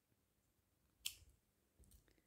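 A single short snip of scissors cutting through cotton crochet string, about a second in; otherwise near silence.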